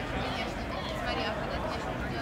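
Indistinct voices, not clearly made out, over a steady low rumble.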